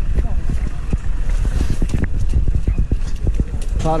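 Footsteps of several people hurrying over rough, gravelly ground: many irregular crunching steps over a steady low rumble of handling noise on the microphone. A man starts shouting near the end.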